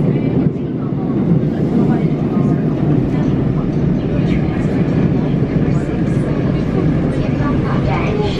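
Subway train running, heard from inside the passenger car: a steady, loud low rumble of wheels and motors on the track, with faint passenger voices underneath.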